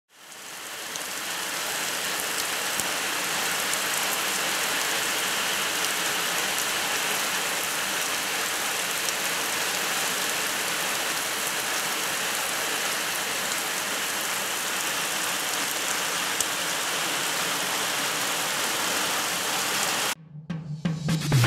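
A heavy downpour falling onto a wet, puddled farmyard: a steady rushing hiss with scattered sharp drop ticks. It fades in over the first second or two.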